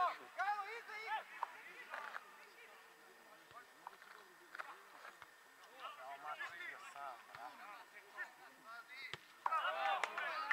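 Men's voices shouting and calling out intermittently across an open football pitch during play, with short lulls between the calls.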